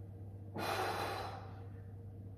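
A man's heavy sigh: one long breath out starting about half a second in and lasting under a second.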